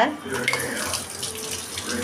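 Water running from a tap into a stainless steel kitchen sink, a steady rush of water splashing on the metal basin.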